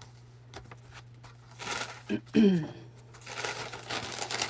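A sheet of parchment paper rustling and crinkling in short bursts as it is picked up and handled. About halfway a brief falling vocal sound, a short 'hmm', is the loudest thing, and a low steady hum runs underneath.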